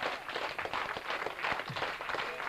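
Concert audience applauding: a dense, steady patter of many hands clapping.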